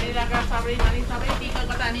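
Busy street-market ambience: overlapping chatter of passing shoppers with a few sharp knocks and clatters, and one heavy thump just under a second in.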